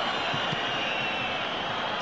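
Steady crowd noise from a packed football stadium, heard through a TV match broadcast.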